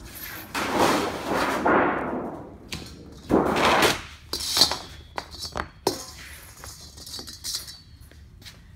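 Sheet-metal chase cap panel being handled and pressed flat after cross-breaking. The sheet rumbles and rattles twice, each time for a second or more, then gives a run of light clicks and taps.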